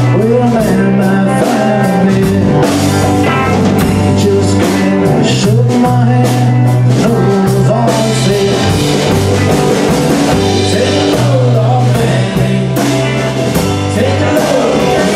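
Live band playing a roots-rock number: electric guitar, acoustic-electric guitar, bass guitar and drum kit, with a steady beat and held bass notes.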